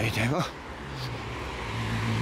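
Road traffic: car noise dies away in the first half second, leaving a quieter, steady low hum of traffic.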